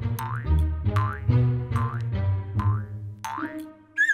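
Cartoon bouncy-ball sound effect: four short rising boings, evenly spaced about a second apart, as the ball bounces around the room, over light background music with a bass line.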